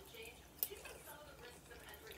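Faint sounds of someone eating a mouthful from a spoon, with a single light click a little over half a second in.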